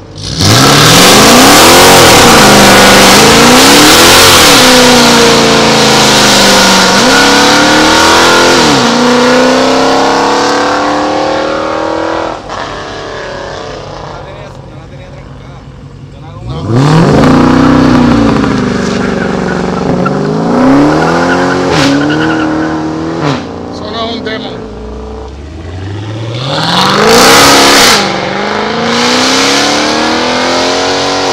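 Dodge Challengers launching hard one after another. The engine pitch climbs and falls back at each gear change, several times in quick succession, with a hiss of spinning tires at each launch. The first run fades out about twelve seconds in; another car launches about seventeen seconds in, and the engine revs up again near the end.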